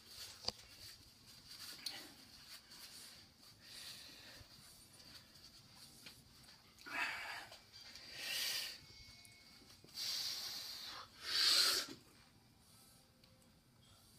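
A man's strained, forceful breaths as he tries to bend a quarter-inch Grade 8 bolt by hand: a few hard exhalations in the second half, the loudest about three quarters of the way through.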